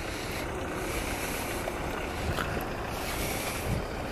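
Outdoor wind on the microphone: a steady, even rushing noise with no distinct events.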